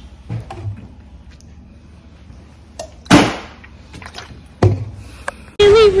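A few scattered knocks and thumps, the sharpest about three seconds in and another about a second and a half later.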